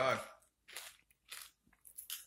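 Mouth-closed chewing of Doritos tortilla chips with guacamole: three short crunches about half a second apart.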